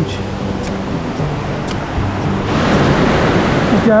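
Soft background music with sustained low notes, then from about two and a half seconds in, the louder steady rush of a mountain creek cascading over rocks.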